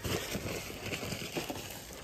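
Objects being handled on a shelf as a hand reaches for a plastic bag of ground coffee: a run of light, irregular clicks, clinks and rustles.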